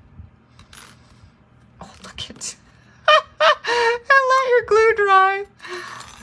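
A few light clicks and rustles of small plastic and paper pieces being handled, then a woman's voice singing wordless drawn-out notes for about two and a half seconds, the pitch wavering and sliding down at the end.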